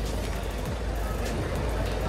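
Steady low rumble of road traffic and vehicles.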